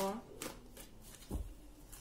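A deck of oracle cards being shuffled by hand. There are a few sharp card slaps, the most distinct about one and a half seconds in.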